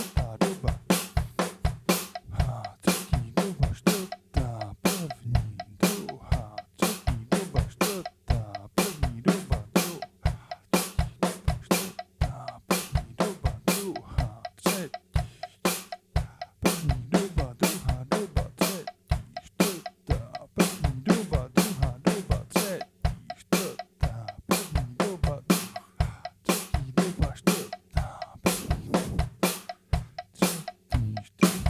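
Acoustic drum kit played in steady sixteenth notes, sticking moving between snare drum and toms over the bass drum, as a hand-and-foot coordination exercise.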